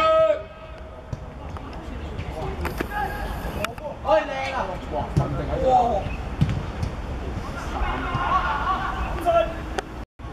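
Players and onlookers shouting across an outdoor football pitch in short calls, over a steady low rumble, with a few sharp knocks.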